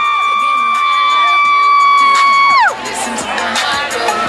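A singer holds one long high note over music and a cheering crowd, then slides down off it about two and a half seconds in.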